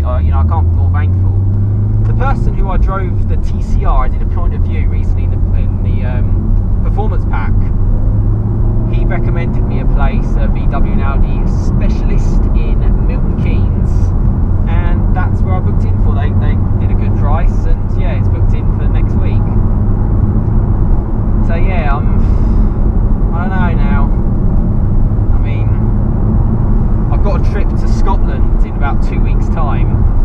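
Steady low drone of a Mk7 Volkswagen Golf R's turbocharged four-cylinder engine and road noise, heard inside the cabin while driving, under a man's talking.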